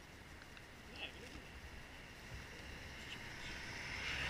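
Quiet street background with a faint voice about a second in. A car's road noise rises gradually towards the end as it approaches.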